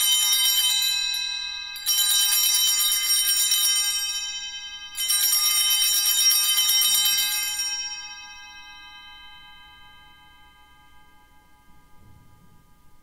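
Altar bells, a cluster of small hand bells, rung in three shaken peals to mark the elevation of the consecrated host. The third peal dies away slowly.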